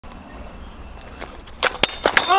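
Stunt kick scooter rolling on an asphalt driveway with a low rumble, then two sharp clacks near the end as the rider pops the scooter off the ground into a jump.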